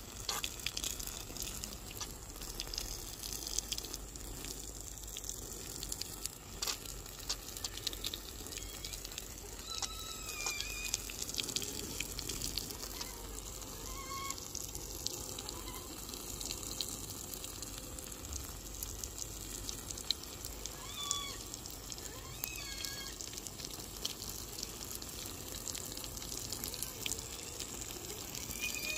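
Water spraying from a garden hose onto bare soil, a steady hiss and patter, with a few short chirps now and then.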